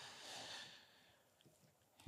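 Near silence: a faint, short breath-like hiss in the first half-second or so, then a quiet room.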